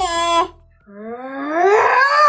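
A person's voice making wordless vocal sounds: a wavering held sound that breaks off about half a second in, then a long wail that rises in pitch.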